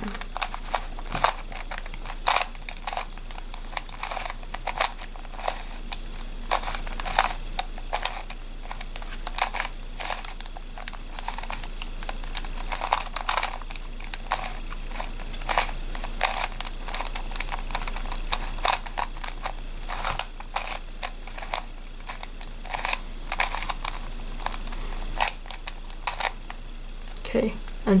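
Plastic face-turning octahedron puzzle being twisted by hand: a rapid, irregular run of clicks and clacks as its layers are turned over and over.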